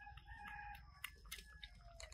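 A rooster crowing once, faint: one long call that dips in pitch at the end. A few sharp clicks of macaques chewing jackfruit come in the middle of it.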